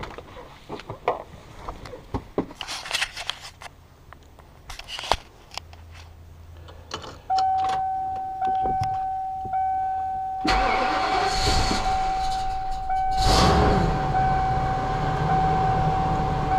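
Keys jingling and clicking, then a steady electronic warning tone about seven seconds in. At about ten and a half seconds the motorhome's Ford engine cranks and fires on a cold start after sitting about a week and a half. It surges once more a few seconds later and keeps running, with the warning tone still sounding over it.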